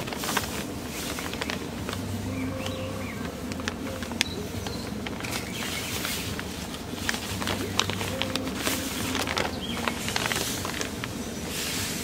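Sand poured from a plastic sand bag into the hole around a wooden fence post, with the bag rustling and crinkling in short irregular clicks as it is tipped and shaken.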